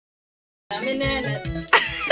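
After a moment of silence, music starts about a third of the way in: a woman's voice singing a wavering held note over a backing track with a low beat. A sudden louder sound breaks in near the end.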